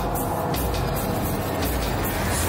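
Dramatic background music with a deep, steady low rumble.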